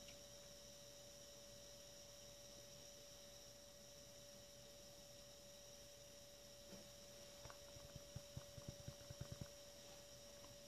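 Near silence with a steady faint hum. Late on comes a run of faint low knocks, several a second, from a green plastic gold pan being handled and rocked over a tub of water.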